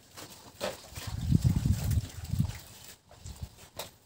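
Low, rough grunting from an animal, lasting about a second and a half and starting about a second in, with a few short clicks before and after it.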